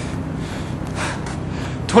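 A person draws a breath in the pause between sentences, over a steady low background hum.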